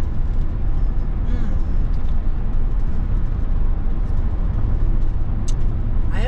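Steady low rumble of engine and tyre noise heard inside a moving vehicle's cabin, with a single brief click near the end.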